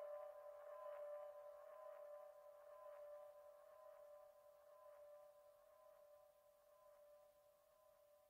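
Faint electronic music outro: one steady held synth note with overtones, slowly fading out at the end of the song.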